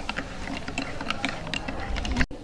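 Metal teaspoon stirring coffee in a ceramic cup, clinking against the cup's sides in quick, uneven repeated taps.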